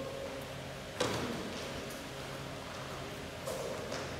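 Footfalls of players doing shadow footwork on a synthetic badminton court: one sharp foot stamp about a second in, then softer scuffs and steps.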